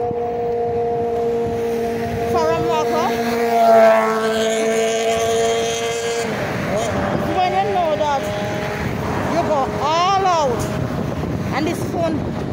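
Birds calling, a few short curving whistled calls that she calls so pretty, over a steady engine hum from road traffic that swells about four seconds in and stops about six seconds in.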